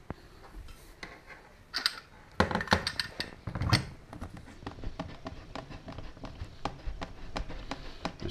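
Handling clatter of metal fittings and a pressure gauge assembly against a hard plastic carrying case. There are a few clicks, then a cluster of sharper knocks about two to four seconds in, followed by lighter ticking and fiddling.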